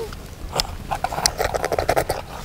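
Several children eating jelly from plastic cups with spoons: short wet slurping and smacking sounds, with a quick run of slurps near the end.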